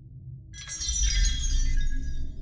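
Glassy shatter-and-chime sound effect over a low ambient music drone. A bright, ringing hit with a deep boom underneath starts about half a second in and fades near the end.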